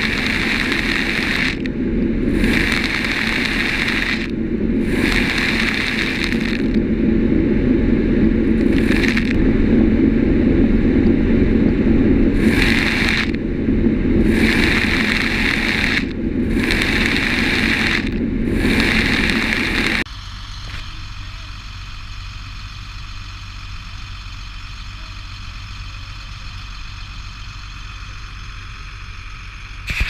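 Hatchery feed truck running alongside trout raceways while its blower shoots pellet feed out over the water, a steady engine rumble with rushing bursts every second or two as feed is blown out and lands among the feeding trout. About two-thirds of the way through the sound drops abruptly to a quieter steady hum.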